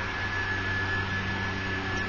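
Steady low electrical hum and hiss of room background noise, with a thin, steady high-pitched whine running through it.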